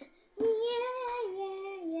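A child's voice singing a long, drawn-out "yeah", its pitch stepping down twice.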